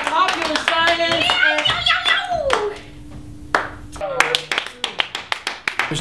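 A small group cheering and shouting while clapping their hands. After a short lull midway, a quick run of handclaps follows.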